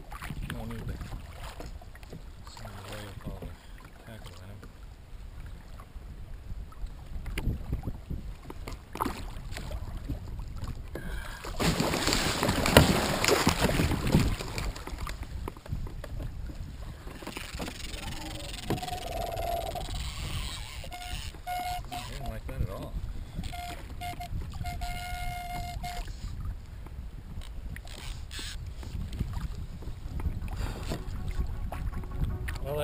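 Sea water sloshing against a plastic fishing kayak, with wind on the microphone. About twelve seconds in there is a loud noisy burst lasting about three seconds.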